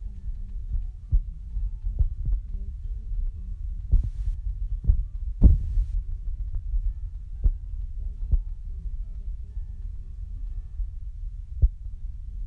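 Handling noise of paper, plastic film and double-sided tape being worked by hand on a hard tabletop. A low rumble runs through, with scattered soft knocks and taps. Two short rustles come about four and five and a half seconds in.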